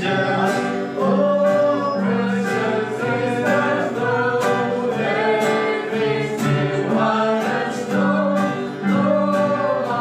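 A hymn sung by voices to a strummed acoustic guitar, with a steady strumming rhythm under the melody.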